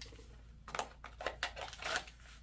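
Handling noise of a 1911 pistol being lifted off a table and pushed into a Kydex inside-the-waistband holster: a quick run of soft clicks and rustles, the loudest near the end as the gun goes into the holster.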